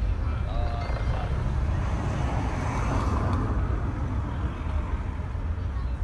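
Steady low rumble of a slowly moving car heard from inside the cabin, with a broader rushing swell around the middle.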